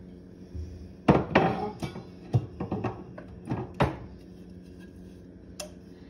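Dishes and cups knocking and clinking as they are lifted out and set down, a quick run of clatters over about three seconds with the loudest near the start, then one more click near the end.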